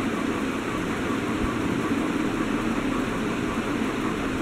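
Steady background hum and hiss, even throughout, with no distinct knocks or squeaks.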